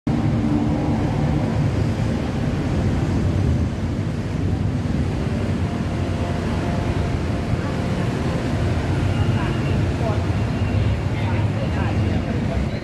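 City street ambience: a steady low rumble of traffic with voices of people nearby.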